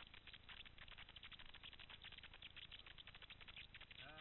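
Mountain bike rolling down a rocky trail: a faint, fast, dense rattle of tyres on stones and loose parts shaking, over a low rumble.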